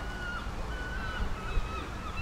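Several faint, short bird calls over steady outdoor background noise.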